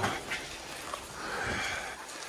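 Handling and rustling noise while a torch is dug out of a pocket and switched on, with a longer breathy sound in the second half.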